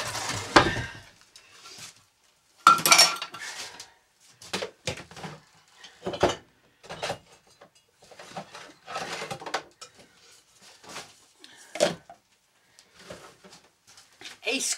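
Dishes and utensils clattering and clinking as they are picked up and set down on a kitchen counter: irregular knocks and clinks, loudest at the start and about three seconds in.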